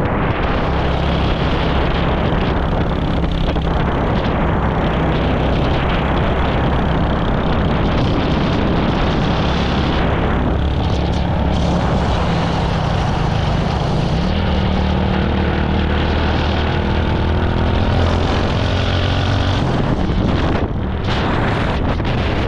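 Small motorcycle engine running at road speed with wind rushing over the microphone; the engine note shifts a little partway through as the speed changes.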